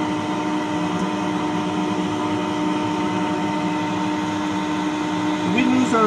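Steady machinery hum with a constant low tone inside a small submersible's cabin: the sub's onboard machinery running. A voice starts just before the end.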